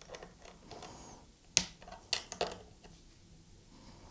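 A few sharp metallic clicks of a small wrench working the tuner bushing nuts on an electric guitar headstock, bunched around the middle.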